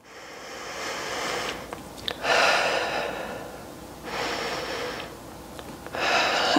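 A woman breathing slowly and audibly, in through the nose and out through the mouth, while holding a deep stretch. The loudest breath comes about two seconds in, and another follows about four seconds in.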